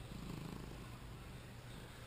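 Domestic tabby cat purring faintly, a low, steady purr.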